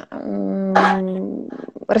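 A woman's long, level hesitation sound, a held 'ehhh' on one pitch while she searches for a word, broken briefly by a breathy hiss near the middle.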